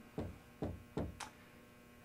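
Dry-erase marker strokes on a whiteboard: four short scratches and taps in about a second, over a faint steady mains hum.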